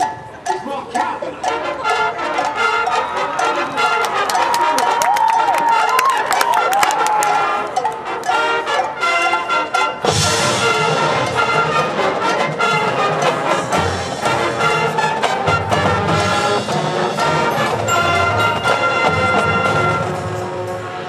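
Marching band playing its field show, brass and percussion: a lighter passage, then at about ten seconds the full band comes in louder and deeper.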